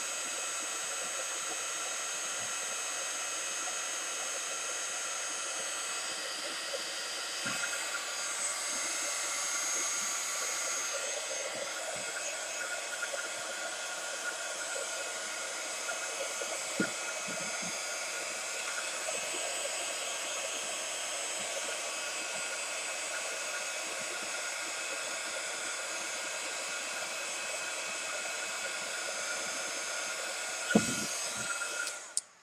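Craft heat gun running steadily, blowing hot air to dry wet ink: a continuous hiss of rushing air with a faint whine from its fan motor. A few faint light taps come through, one around the middle.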